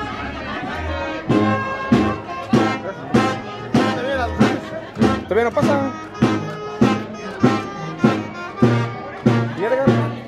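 Brass band music with a steady beat and sustained brass notes.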